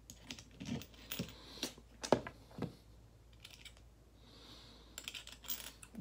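Irregular metal clicks and taps of needle-nose pliers and small metal parts being handled at an e-rig's atomizer as the titanium bucket is worked out. There are several in the first three seconds and a cluster near the end.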